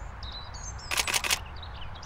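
A DSLR camera shutter firing a quick burst of several frames about a second in, over outdoor ambience with high bird chirps.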